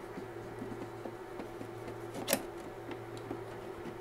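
A steady low hum, then about two seconds in one sharp click as a wooden prop stick is set against the printer's open scanner lid, with a few faint handling ticks.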